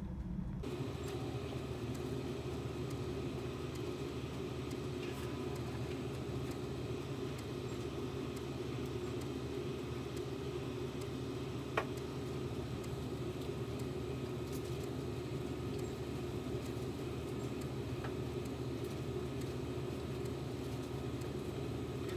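Canon inkjet photo printer running as it prints a photograph and slowly feeds the sheet out: a steady mechanical hum, with a single short click about twelve seconds in.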